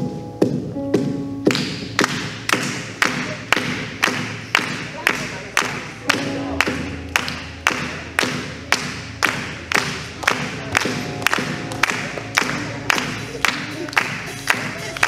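A group clapping hands in time, about two claps a second, over a few held keyboard notes.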